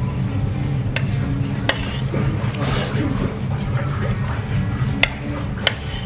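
Metal spoon clinking against a ceramic plate four times while scooping curry rice, over background music and a steady low hum.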